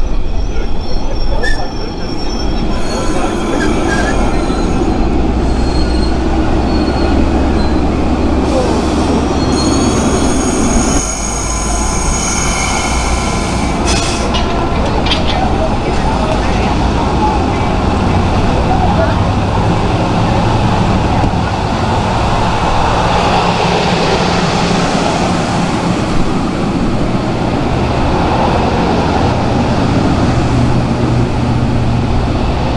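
Amtrak passenger cars rolling past close by, with a steady rumble of wheels on rail. Thin high-pitched wheel squeal runs through roughly the first half.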